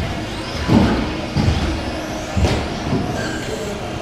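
Electric 1/10 stock RC buggies racing around a carpet track in a reverberant hall, their motors whining with rising and falling pitch. A few dull thumps come about a second apart.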